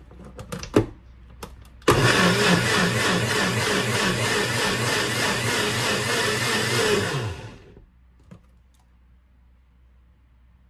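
Personal blender with a stainless base: a few clicks as the cup is pressed and locked onto the base, then the motor runs loudly for about five seconds, pureeing chunks of tomato and vegetables into a smooth sauce, and winds down with a falling pitch.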